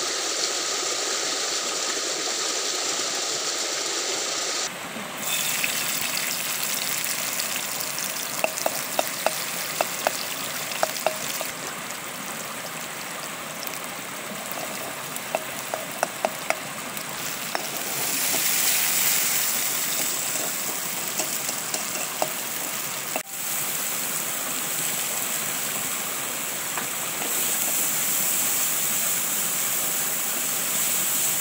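Food frying in oil in a metal wok over a wood fire, stirred with a long-handled spoon that clicks sharply against the pan in two bursts, over the steady rush of a stream.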